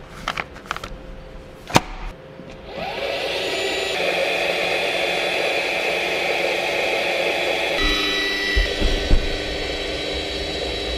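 Clicks and knocks as a juice pack is loaded and the door shut, then about three seconds in a Juicero juice press's motor starts and runs steadily for about five seconds as it squeezes the pack, its sound changing near the end. A few low thumps follow.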